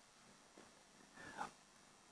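Near silence: quiet room tone through the desk microphone, with one faint brief sound about a second and a half in.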